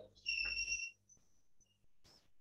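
A short, steady, high whistle-like tone lasting under a second, followed by a few faint, brief high chirps.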